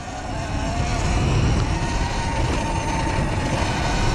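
Sur Ron electric dirt bike riding over dirt: a faint, thin electric-motor whine that rises a little in pitch at first and then holds steady, over a low rumble of wind and tyres on loose dirt that grows slowly louder.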